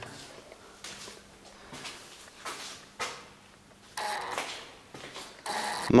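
Footsteps and a few sharp knocks at irregular intervals on a bare, debris-strewn concrete floor, with a faint steady hum underneath.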